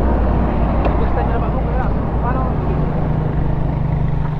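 Suzuki Raider 150 Fi's single-cylinder four-stroke engine idling steadily while the motorcycle stands still, with people talking faintly over it.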